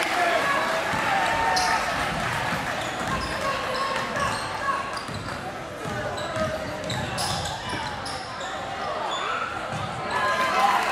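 Live gym sound of a basketball game: a basketball bouncing on the hardwood court and brief sneaker squeaks, under voices of players and spectators calling out.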